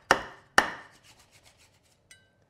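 A wide-bladed cleaver cutting down through crisp, oven-blistered pork belly crackling on a wooden board. There are two sharp crunches about half a second apart, then fainter crackling as the blade works through the skin.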